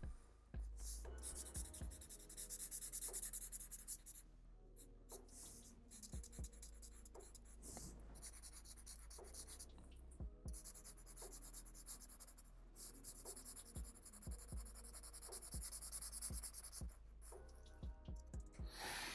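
Felt-tip marker scratching across paper in a run of drawing strokes, each lasting a second or several, with short pauses between and a few light taps; faint.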